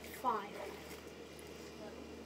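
A single spoken word, "five", then a pause holding only faint, steady outdoor background noise with a low constant hum.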